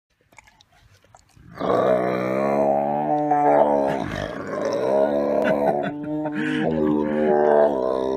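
Tiger growling with its mouth on a person's arm in a playful love bite: one long, low, steady-pitched growl that starts about a second and a half in, breaks briefly about four seconds in, then carries on.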